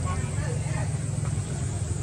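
A steady low rumble of a running motor, with faint voices behind it.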